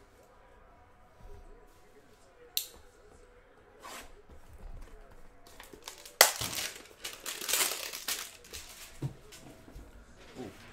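Cellophane wrapper crinkling and tearing as it is stripped off a cardboard hanger box of trading cards. There is a sharp click about two and a half seconds in, and the loudest stretch of crinkling comes from about six to nine seconds.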